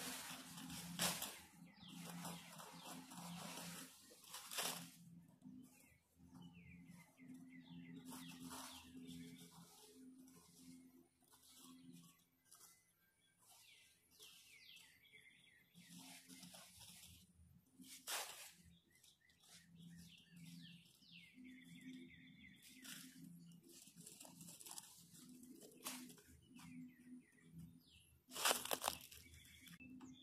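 Gloved hands clearing a woodland flower bed, pulling at plants and dry leaf litter with intermittent rustling and crunching, the loudest bursts near the start and near the end. Small birds chirp faintly in the background.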